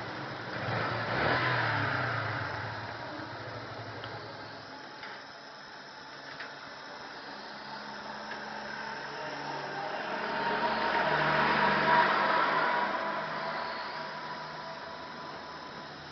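Yamaha Fazer motorcycle engine idling and revved up twice: briefly about a second in, then a longer, slower rise in revs that peaks around ten to thirteen seconds in before settling back.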